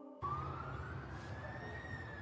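A faint single tone that starts after a brief silence, glides slowly upward and then eases slightly back down, over a low steady hum.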